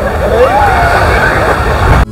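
Wind rumbling on the microphone over a steady wash of surf-like noise, with faint voices of people in the background.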